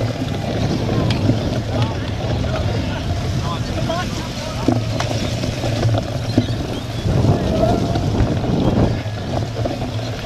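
Bicycle-mounted action camera riding over rough, muddy grass in a cyclocross race: a steady rumble of wind and tyre noise on the microphone with scattered knocks and rattles from the bike.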